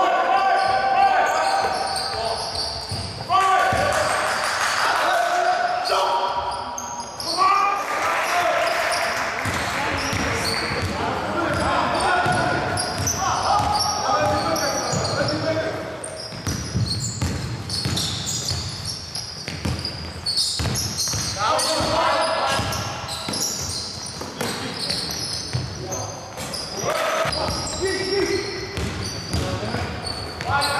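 A basketball game in a large gym: the ball bouncing on the hard court, along with many short knocks, and people's voices calling out throughout, echoing in the hall.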